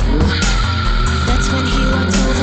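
Two cars launching from a standing start in a drag race: an engine revs up in the first half-second, then a steady tyre squeal from wheelspin. Background music with a steady beat plays over it.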